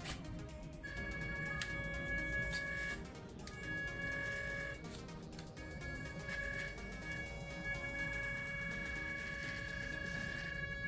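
WPL B36 RC truck's electric motor and gearbox whining as it crawls along at its slowest speed, towing a loaded trailer. The whine is steady and high, cutting out briefly about three seconds in and again near five seconds before picking up again.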